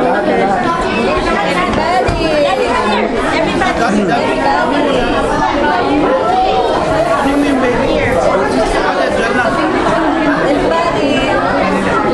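Many guests chatting at once, a steady hubbub of overlapping voices with no single speaker standing out.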